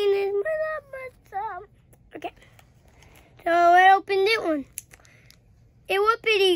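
A young boy's high voice in several short sing-song calls without clear words, the pitch bending and wobbling, with a longer, louder call about three and a half seconds in.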